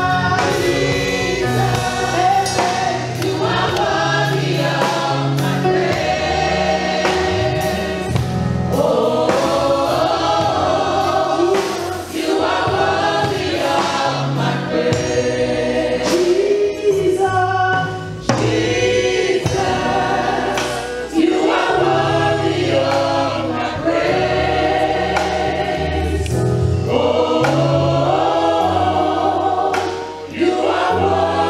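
A live gospel praise and worship song: a worship team of female singers, joined by the congregation, singing with a choir sound over steady instrumental accompaniment.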